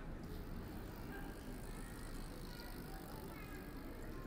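Outdoor ambience of a busy pedestrian shopping street: a steady background din of passers-by and the city, with scattered short faint pitched sounds in it, recorded on a binaural microphone.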